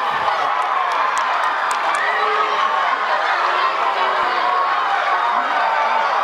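Crowd cheering and shouting for a home run, many voices at once.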